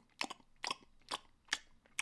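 A person chewing food close to the microphone during a mukbang: a series of short, wet mouth clicks and smacks, about two a second.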